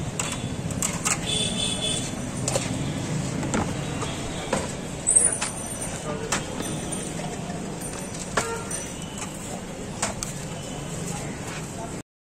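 Busy street ambience with traffic hum and background voices, over which come scattered sharp clicks and knocks of hands mixing puffed rice in a plastic bowl and scooping it onto a plate. The loudest is a sharp knock with a brief squeak about five seconds in.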